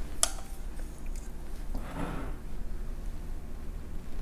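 Quiet room tone with faint handling sounds of chopsticks laying sauce-coated raw salmon strips onto rice in a ceramic bowl: a sharp click just after the start and a soft, brief wet sound about two seconds in.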